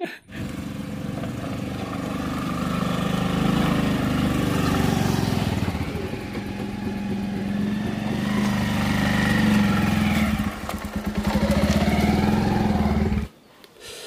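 Motorcycle engine running steadily, a low even hum.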